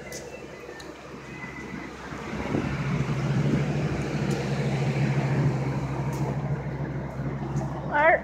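A motor vehicle's engine running close by: a low, steady rumble that swells about two and a half seconds in and eases off near the end.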